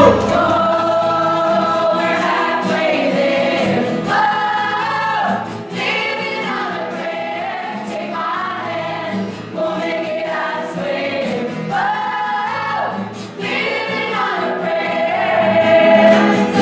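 A group of women singing together as a choir, in short phrases of held notes that repeat every two seconds or so.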